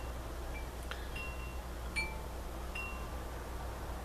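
Faint high chime notes: a handful of short single rings at two or three pitches, about one a second, over a steady low hum.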